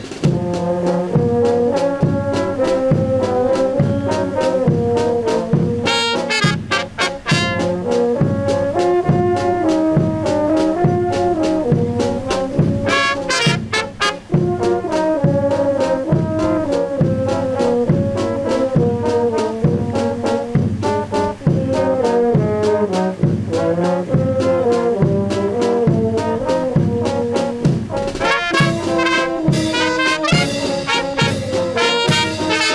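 Brass band playing a tune: trumpets carry the melody over tubas and horns, with a steady beat in the low brass of about two notes a second.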